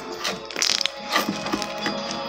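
Homemade slime squeezed and pressed by hand, giving clusters of quick crackling clicks, over steady background music.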